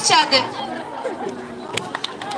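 Children's voices over crowd chatter, with high voices calling out in the first half-second, then a sharp click near the end.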